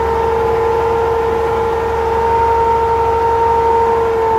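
Bedford Green Goddess fire engine running, loud and steady: a level whine over a low rumble, holding one pitch.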